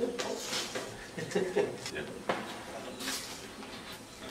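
Quiet, indistinct talking in a room, with a couple of short knocks about two and three seconds in.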